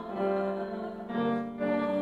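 Congregation singing a hymn with piano accompaniment, in held notes that change about a second in.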